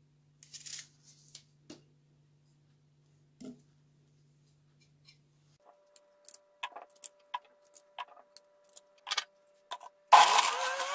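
Faint, irregular clicks and taps of a kitchen knife cutting small crabapples by hand and knocking against a ceramic plate, sparse at first and coming more often in the second half, over a faint steady hum.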